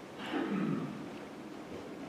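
A short vocal sound from one person, about half a second long and falling in pitch, over the steady low noise of a large room.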